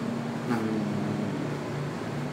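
Steady low electrical hum in a small office, with a man's drawn-out hesitant "uhh" starting about half a second in and trailing off.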